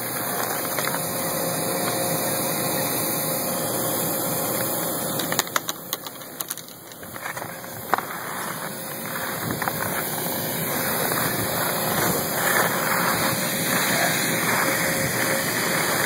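Electric blower fan that keeps an inflatable Big Air Bag landing cushion inflated, running steadily with a faint steady hum. The sound dips briefly about six seconds in, then grows gradually louder toward the end.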